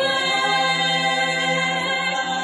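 An a cappella group singing, holding one sustained chord of several voices over a steady low bass note.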